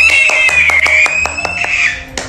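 Punjabi bhangra song playing with a clapping beat. Over it a toddler gives one long, high-pitched squeal that drops away near the end.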